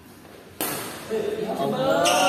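A badminton racket striking the shuttlecock: one sharp hit a little over half a second in, ringing on in a large hall. Players' voices follow.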